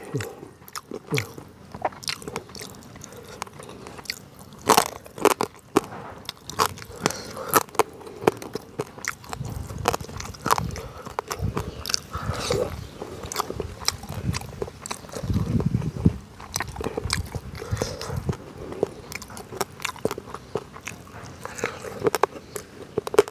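Close-miked eating: a person biting and chewing, with wet mouth smacks and crunching from small hard bones, in an uneven run of sharp clicks.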